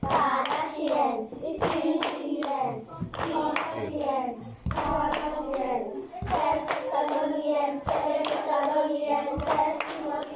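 Children singing a song together while clapping their hands in rhythm, sharp claps about two to three a second over the singing.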